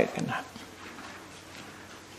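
A man's speaking voice trails off in the first half-second, followed by a pause of faint room tone.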